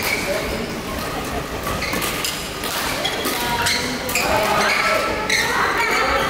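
Badminton hall sound: players' voices echoing in a large hall, with sharp thumps of rackets hitting shuttlecocks and short squeaks of court shoes on the floor.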